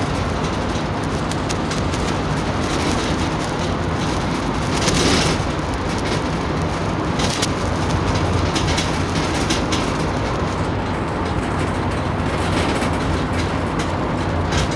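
Steady, fairly loud rumbling background noise, the same as under the speech on either side, with a few faint clicks and a brief louder rush of noise about five seconds in.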